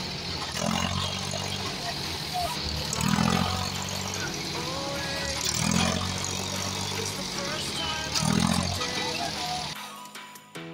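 New Holland tractor's diesel engine running, revving up in surges about every two and a half seconds, with people calling out over it.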